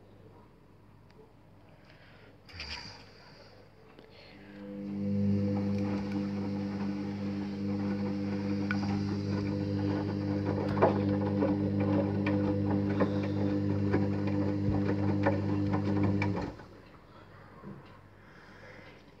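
Hoover HJA8513 washing machine in a cotton 60 wash: the drum motor turns the drum with a steady low hum and many small clicks. It starts about four seconds in and cuts off sharply near the end, a tumble phase of about twelve seconds.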